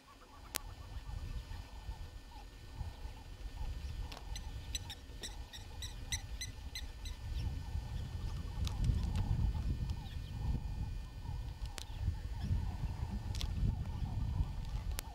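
Impala rams sparring: a few sharp clacks of their horns striking, against a low wind rumble on the microphone that grows stronger in the second half. Midway a bird calls a quick run of short high notes, about five a second.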